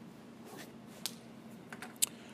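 A few light, isolated clicks, the strongest about a second in, over a faint steady hum.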